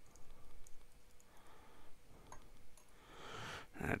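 Faint small clicks of a Sailor fountain pen's converter being twisted to draw ink up from a bottle, taking up little ink with air trapped in it. A soft breath near the end.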